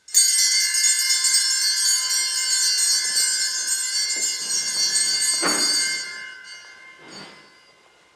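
A small hand bell (sacristy bell) is rung at the start of Mass, with many high ringing tones that last about six seconds and then die away. A few soft thuds come through it, the loudest about five and a half seconds in.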